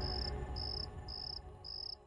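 Cricket chirping in short, even high chirps about twice a second, over faint low background music that fades away near the end.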